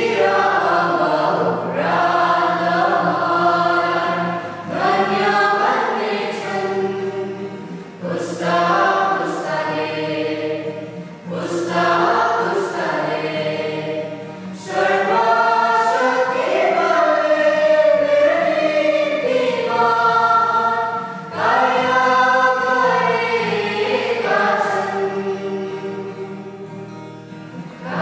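A choir singing a Nepali Catholic bhajan in phrases a few seconds long, over steady low held notes.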